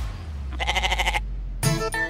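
Sitcom comedy background score: a low held bass note, with a short quavering, buzzy sound effect in the middle. A new pitched musical phrase starts near the end.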